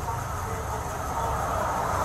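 Steady low rumble of idling vehicles picked up by a police body-camera microphone, with faint voices in the background.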